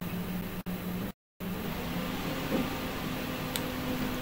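Steady room noise: an even hiss with a low hum underneath, broken by two brief dropouts in the first second and a half.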